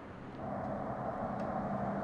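Road traffic on a highway: a vehicle's engine and tyre noise, gradually growing louder as it approaches.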